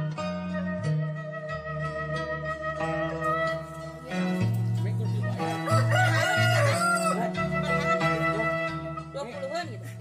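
A rooster crowing once, a long wavering call about halfway through, over background music with a flute melody and a steady bass line.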